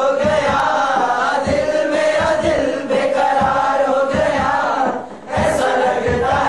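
A crowd of young men chanting a short phrase in unison over a steady low beat of about two a second. The chant breaks off briefly near the end and then picks up again.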